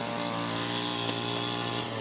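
A small engine running steadily at one constant pitch.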